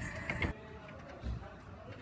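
Car cabin sound, the engine's low rumble with the tail of a laugh, cut off abruptly about a quarter of the way in. Then a quiet background hum with a single soft low thump.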